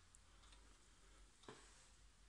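Near silence: room tone with a faint low hum and one faint click about one and a half seconds in.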